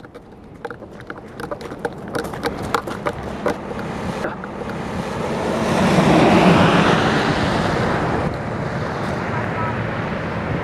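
Strong storm wind buffeting the microphone. It crackles and pops for the first few seconds, then swells into a loud, steady rush from about four seconds in, loudest around six to seven seconds. It is the gusting ahead of an approaching tornado.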